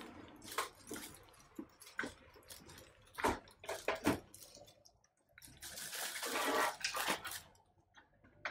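Clear plastic wrapping on a PC radiator crinkling and rustling as it is handled, with scattered light clicks and knocks of the radiator against the case. The longest stretch of rustling comes about two-thirds of the way through.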